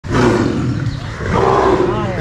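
A tiger roaring: a loud, low, rough call that starts abruptly.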